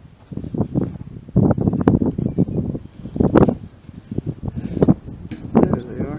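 Wind buffeting the microphone in uneven low bursts, the strongest gusts about a second and a half in, at about three seconds and near the end.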